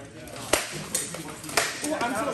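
Practice swords striking shields and armour in sparring: three sharp cracks, the loudest about half a second in, the others near one second and around a second and a half.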